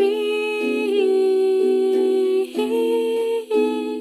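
A hymn being sung: a voice holds long sustained notes, with several pitches sounding together, and changes note briefly twice in the last part.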